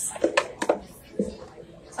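A vacuum-crushed plastic bottle crackling with a few sharp clicks in the first second as it is handled and its cap twisted off, over faint voices.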